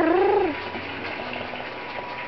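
A Havanese puppy's drawn-out, wavering "woo" vocalization that stops about half a second in.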